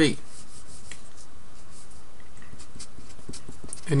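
Steady background hiss with a few faint, scattered ticks during a pause in speech.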